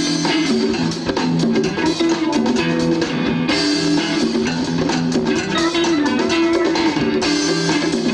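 Live rock band playing: electric guitars and bass over a drum kit keeping a steady beat.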